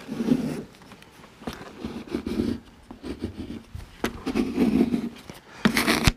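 Plastic squeegee rubbing in repeated strokes over a vinyl decal's application tape on car window glass, pressing the decal down.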